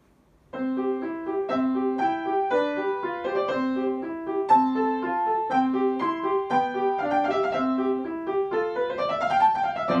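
Upright piano playing the opening of a classical sonata, starting about half a second in: a repeating broken-chord figure in the low notes under a simple melody, turning into quick rising and falling scale runs near the end.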